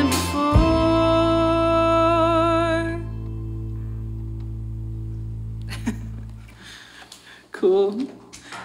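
A band's last chord ringing out, guitars with a wavering held note on top, cut off about three seconds in while the low bass note fades away over the next few seconds. A voice starts right at the end.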